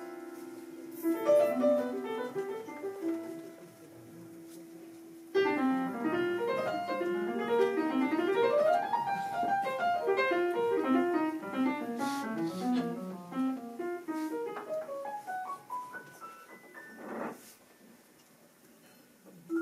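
Live jazz piano: a few held chords, then from about five seconds in a fast flurry of runs climbing and descending the keyboard, thinning out to sparse notes toward the end.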